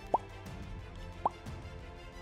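Two short upward-sliding pop sound effects about a second apart, over a steady background music bed, as in an animated logo transition.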